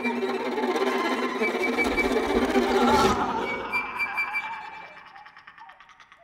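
Live experimental music for string trio and electronics, with bowed violin and cello in dense sustained layers, swells to a peak about three seconds in. It then drops away abruptly and fades to faint scattered ticks.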